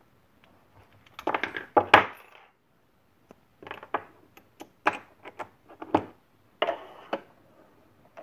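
Small aluminum injection mold clinking and knocking against metal as it is handled and set onto the steel base of a benchtop injection molding machine: a string of short, sharp metallic clicks, loudest in a cluster about a second in, with more scattered through the middle.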